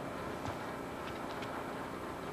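Steady running noise of a moving bus heard from inside it, with a few faint ticks a little past a second in.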